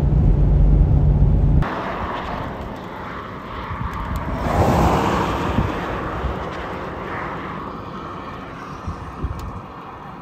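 Low road-and-engine rumble inside a moving car that cuts off abruptly after about a second and a half; then open roadside air, with a car passing on the highway, swelling and fading about four to six seconds in.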